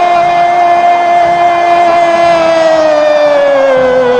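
A radio football commentator's long, held goal cry of 'gol' in Portuguese: one sustained shouted note that slowly sinks in pitch toward the end as his breath runs out.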